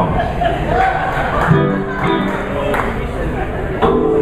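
Loose electric guitar and bass notes played between songs over talking and crowd chatter, with a held note coming in near the end.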